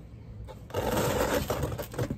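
Potting soil sprinkled by hand into a planter: a grainy rustle of about a second, starting a little under a second in.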